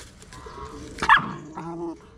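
A puppy gives one short, high yip about a second in.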